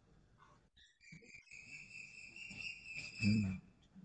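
A faint, high-pitched whistling tone that glides up briefly at its start, then holds one steady pitch for nearly three seconds.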